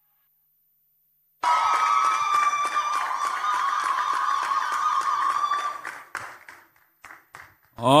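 Applause with cheering voices, starting suddenly about a second and a half in and dying away at about six seconds into a few scattered claps.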